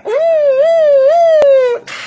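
A man imitating an ambulance siren with his voice: one long held note that rises and falls gently and slides down at the end, with a short sharp click near the end.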